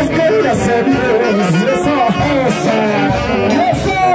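A live band playing lively dance music with melody instruments over a drum kit, loud and continuous.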